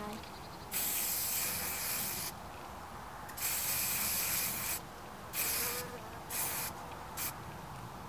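Bee-repellent spray hissing out of its container onto a bare hand in bursts: two long sprays of about a second and a half, then three short ones.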